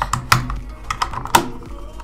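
About five sharp plastic clicks and snaps as a white camera battery charger and its detachable wall-plug adapter are handled and fitted together.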